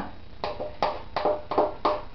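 A spatula knocking against a metal mixing bowl five times in quick succession while whipped cream is scooped out, each knock short with a faint ring.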